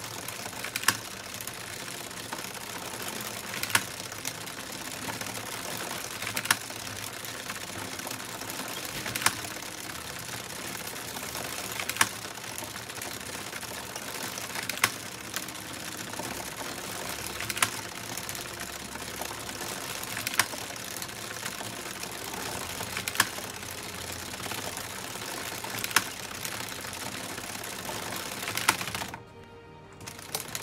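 Addi Express circular knitting machine running continuously, its plastic needles clattering steadily as the carriage goes round, with a sharper, louder click about every three seconds.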